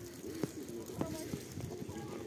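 Footsteps on packed snow, a short step sound about every half second, with low muffled voices underneath.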